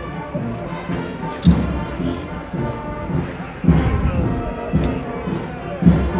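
Brass band music, sustained horn-like tones with heavy low drum beats about every two seconds.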